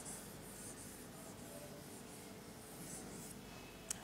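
Faint scratching of chalk on a blackboard as lines and circles are drawn, in short strokes that stop about three-quarters of the way through, with a brief sharp click just before the end.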